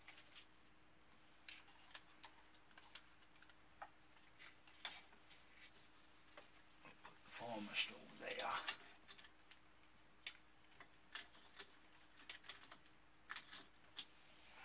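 Faint scattered clicks and light taps of hands handling a wooden ship model's masts and rigging, with a short murmured vocal sound a little past halfway.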